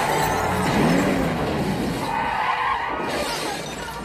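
Film crash sound effects: debris and breaking glass clattering down after a meteor strike on a taxi, dying away over the first few seconds into quieter city-street noise.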